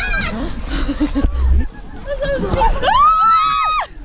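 A child's high-pitched scream about three seconds in, rising in pitch, held for most of a second and dropping away at the end. Before it come brief, wordless voice sounds.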